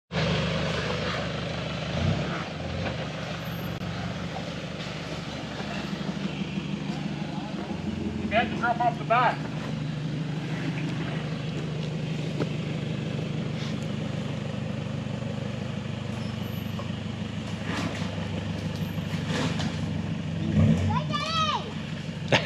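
A Toyota Hilux's engine running steadily at low revs as the four-wheel drive creeps down a steep bank into a muddy pit.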